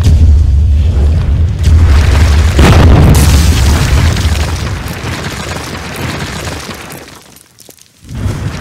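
Logo-intro sound effect of a wall bursting apart: a heavy, rumbling boom with a sharp crack about two and a half seconds in, then crumbling debris that fades away over the next few seconds.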